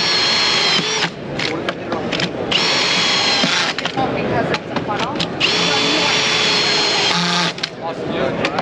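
Cordless drill driving deck edge screws through a CAMO Clip Drive tool into a wooden deck board, running in three bursts of a steady whine, each about one to one and a half seconds long, with crowd chatter behind.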